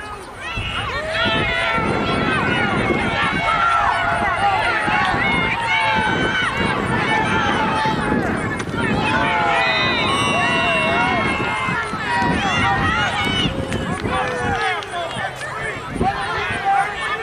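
Sideline spectators yelling and cheering over one another during a running play, many high, excited voices at once. It swells about half a second in and dies down near the end.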